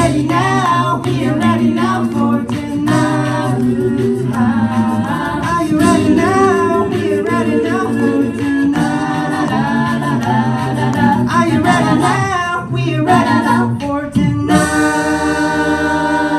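Six-voice a cappella group singing live through a PA in a mixed male and female ensemble, with a low bass voice and a steady beat of vocal percussion under the lead and harmonies. About three-quarters of the way in they move onto one long held final chord.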